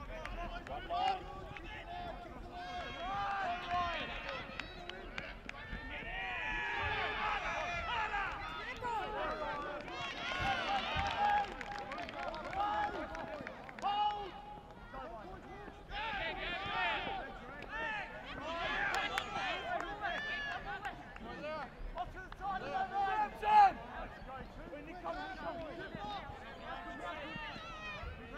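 Rugby league sideline voices: spectators and players shouting and calling, several at once and overlapping, with one brief louder burst near the end.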